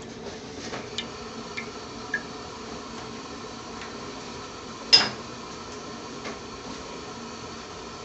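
Steady kitchen background hum with a few faint clicks, and one sharper metallic clink about five seconds in.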